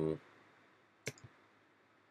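A single sharp computer mouse click about a second in, followed by a fainter tick, against quiet room tone.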